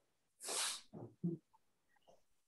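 A person's brief, quiet breathy vocal sound: a short hiss of breath about half a second in, then two short voiced sounds around the one-second mark.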